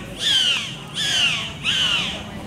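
Bottlenose dolphin calling with its head out of the water: a run of harsh, squawking calls, each sliding downward in pitch, three in quick succession about two-thirds of a second apart.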